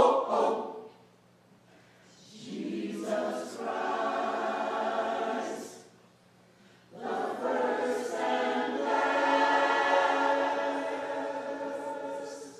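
Gospel choir singing: a short sung burst at the start, then two long held chords, the second held about five seconds, with brief pauses between them.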